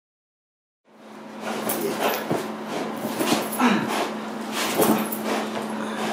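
Silence for about the first second, then a Belgian Malinois protection dog gripping a bite suit and thrashing its head: repeated scuffs and knocks of the suit against the floor, with the dog's own sounds mixed in, over a steady low hum.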